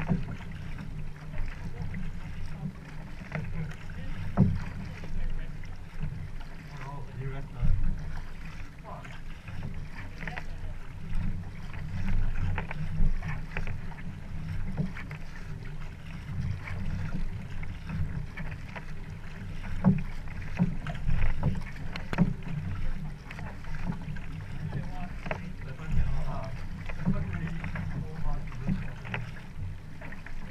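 Canoe paddle strokes splashing close by, with water slapping against the boat hull, over a steady low rumble of wind on the microphone. The splashes come irregularly, every second or two.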